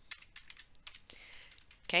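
Computer keyboard typing: a quick run of faint key clicks as a number is entered.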